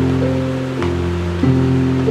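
Electronic keyboard playing held chords in a short instrumental gap between sung lines, the chord changing about three times. Underneath runs the steady rushing of a fan close to the microphone.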